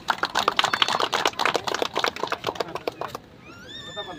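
A small group of people clapping in a quick, uneven patter for about three seconds, stopping suddenly. Near the end a high tone rises and is then held for about a second.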